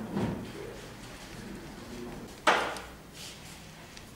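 A single sudden knock or slam about two and a half seconds in, dying away over about half a second, against low room noise.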